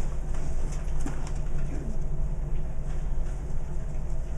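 Steady low hum with faint scattered rustles and small clicks: the background sound of a quiet room.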